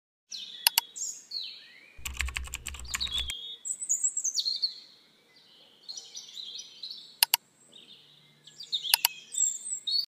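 Birds chirping throughout, with sharp mouse-click sound effects: a couple of clicks early, then a quick run of clicks over a low hum about two seconds in. Single clicks follow near seven and nine seconds.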